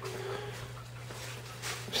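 A pause in speech filled by a steady low hum, with a short faint breath-like hiss near the end.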